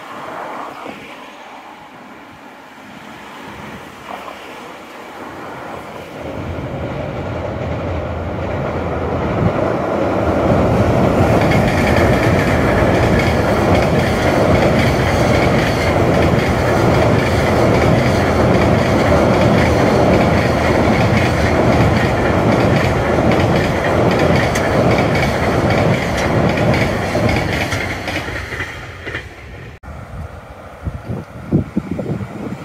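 Long container freight train crossing a steel girder railway bridge over a river, its wheels running on the rails. The sound builds over the first several seconds, holds loud and steady through the middle, then fades near the end.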